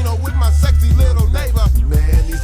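Hip hop track with a deep, sustained bass line under rapped vocals.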